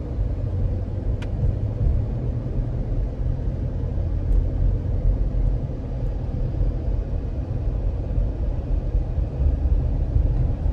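Steady low road-and-engine rumble heard inside the cabin of a moving car, with a brief faint click about a second in.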